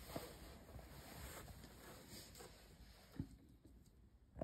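Near silence: room tone with faint scattered noise, and one soft tap a little after three seconds.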